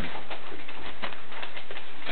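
Wrapping paper rustling and crackling in irregular bursts as a gift is pulled and torn open.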